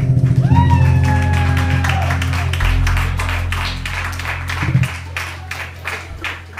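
An acoustic band's closing chord, bass guitar and acoustic guitar, held and ringing out, with a brief rising, held vocal note early on. Audience clapping comes in over it and carries on as the music fades.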